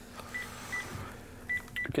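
Mobile phone keypad beeps as a number is dialled: four short beeps at the same high pitch, two in the first second and two close together near the end.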